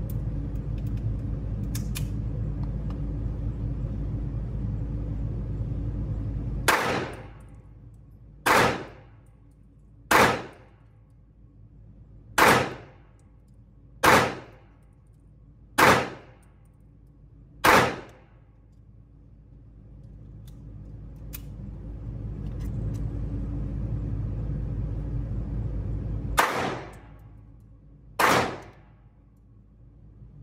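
Kimber Micro 9 9mm micro pistol firing in an indoor range: seven shots about two seconds apart, a pause of several seconds, then two more shots near the end, each shot echoing off the range walls. A steady low rumble sits under the quiet stretches.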